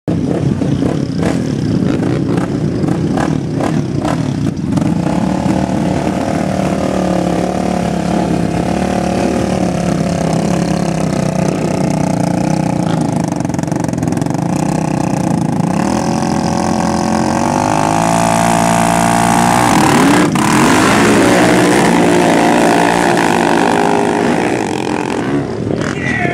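ATV engines idling at a dirt drag strip start line, then a quad revving with rising pitch about two-thirds of the way through as it launches, staying loud to the end.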